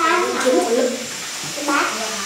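A child's voice speaking in short bursts at the start and again briefly near the end, the words unclear.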